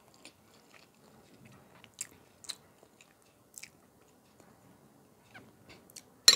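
Close-miked, faint mouth sounds of someone chewing a mouthful of rice pilaf, with soft wet smacks and a few short sharp clicks, the clearest about two, two and a half and three and a half seconds in.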